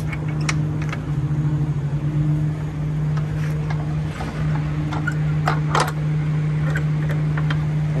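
Steady low hum of an idling diesel truck engine, with a few sharp metallic clinks as steel lock pins are pushed into the rear hatch latches of a belt trailer, two of them close together near the end.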